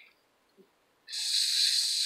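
Near silence, then about a second in a sudden steady hiss of breath drawn in, lasting nearly a second before speech resumes.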